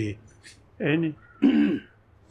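Speech only: an elderly man's voice in two short spoken bursts with pauses between them.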